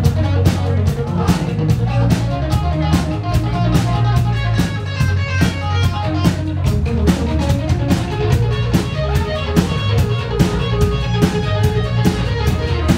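Live rock band without vocals: electric guitar playing a line of single notes over bass guitar and a steady drum-kit beat.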